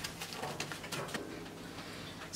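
Quiet rustling of cotton print fabric as hands smooth it flat on a table and lay a tape measure across it, with a few soft brushing sounds.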